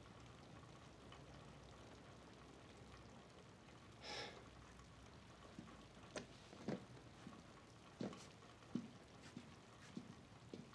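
Near silence in a quiet room, with one soft, brief rustle about four seconds in and a few faint, scattered taps and thuds in the second half.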